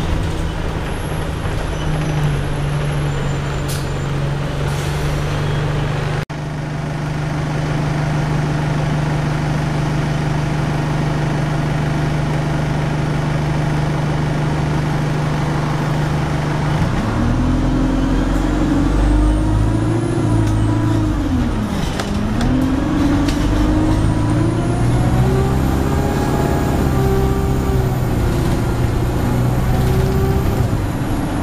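Diesel engine and drivetrain of an Alexander Dennis Enviro200 single-deck bus heard from inside the passenger saloon. The engine holds a steady drone, then a little past halfway its note climbs as the bus accelerates, drops at a gear change and climbs again.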